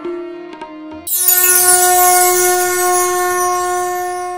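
Intro music sting: a lingering held tone fades during the first second, then about a second in a loud sustained drone note starts, topped by a bright shimmering glitter that slides downward, and holds steadily.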